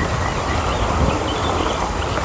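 Wind buffeting the microphone: a steady, rumbling noise.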